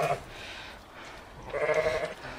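Valais Blacknose sheep bleating: a brief call right at the start and a louder bleat of about half a second near the end.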